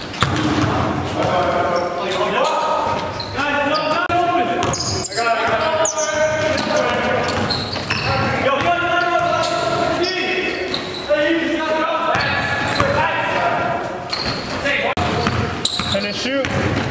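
Basketball being dribbled on a gym floor during a game, with players' voices echoing in a large hall.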